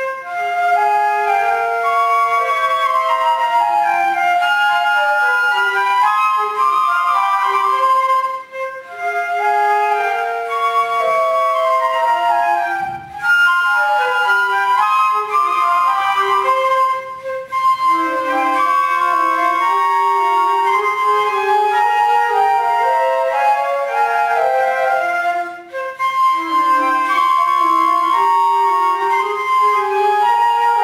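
Trio of concert flutes playing a classical piece together, several melodic lines moving at once, with brief breaks between phrases.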